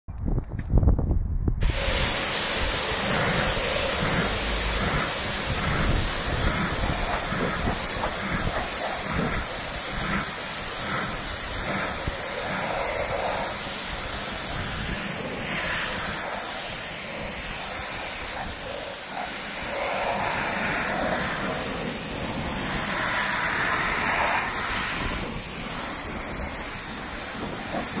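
Nilfisk pressure washer jet spraying water onto car paintwork: a steady, continuous hiss, rinsing foaming prewash off the bodywork. It sets in after low knocking in the first second and a half.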